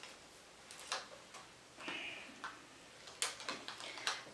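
Faint, scattered clicks and light taps from small craft pieces being handled in the hands, with a brief soft hiss about two seconds in.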